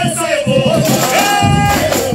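A man singing into a microphone over samba percussion and crowd voices, holding one long note from just past halfway until near the end.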